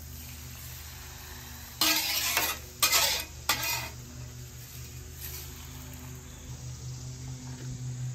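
Metal spatula scraping across a steel flat-top griddle, in three strokes about two to four seconds in, as toasted rice is swept into a rice-cooker pot. A steady low hum sits underneath.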